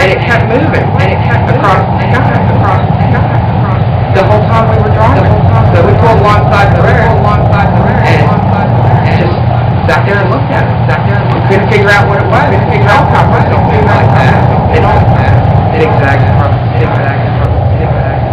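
Lo-fi noise piece: a loud, steady low droning rumble with crackling clicks, a man's voice running buried and indistinct beneath it.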